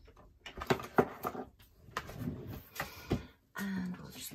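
Hands handling craft materials: several sharp knocks and clicks with rustling as a roll of tape is picked up and a diamond-painting canvas is lifted out of its picture frame.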